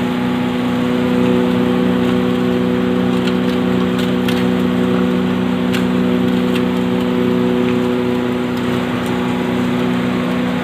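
Zinc and aluminium grinding machine (pulverizer) running steadily: a constant motor hum over a noisy grinding rush, with a few faint ticks about four and six seconds in.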